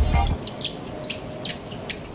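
A rubber grip being worked onto the handle of a tray-style phone stabilizer: rubbing, with a few sharp plastic clicks about half a second apart.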